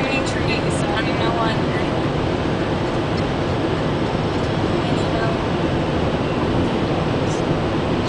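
Steady road, tyre and engine noise heard inside a car cabin while cruising at highway speed.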